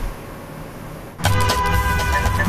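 A TV show's intro jingle starts abruptly about a second in, loud, with held horn-like tones over a low beat, after a moment of low background hiss.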